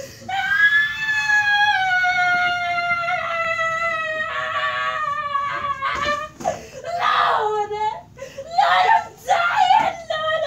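A woman's long, high wailing scream, held for about six seconds and slowly sinking in pitch, then breaking into shorter crying wails.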